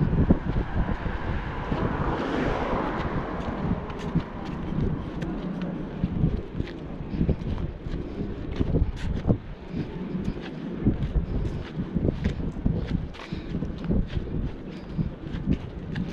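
Wind buffeting the microphone of a walking person's action camera, with footsteps on the pavement; a car goes by about two to three seconds in.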